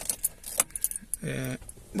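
Car keys jangling, with a string of sharp little clicks and rattles.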